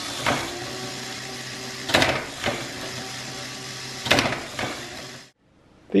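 Lego Technic electric motor running a plastic gear train that tensions a rubber-band catapult through a rack and pinion, with sharp clacks from the crank-driven trigger release, a pair of them about two seconds in and another pair about four seconds in. The whir cuts off abruptly after about five seconds.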